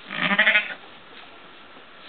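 A sheep bleats once, a wavering call about half a second long.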